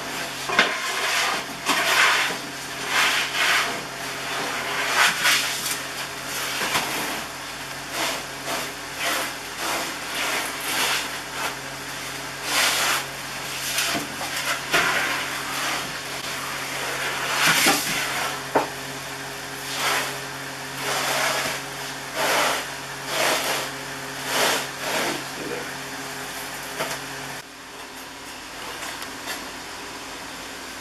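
Loaves and a wooden peel being worked at the mouth of a brick wood-fired bread oven: irregular scraping, sliding and knocking sounds, each about half a second, over a steady low machine hum that cuts off near the end.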